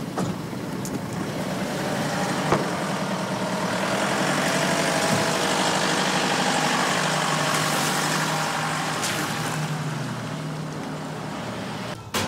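A motor vehicle running and driving, its engine and road noise growing louder toward the middle and easing off near the end, with one sharp knock about two and a half seconds in.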